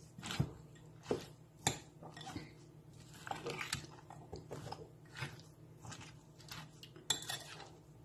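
A utensil stirring a dressed broccoli salad in a glass bowl: soft, irregular scrapes and clinks against the glass as the mayonnaise dressing is mixed in.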